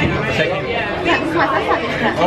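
Conversation: several people talking at close range, their voices overlapping.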